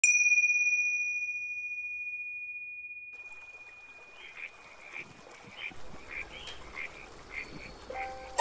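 A bell-like chime struck once, its single high tone ringing and fading over about four seconds. Then a soft hiss of ambience with short animal calls repeating roughly every half second.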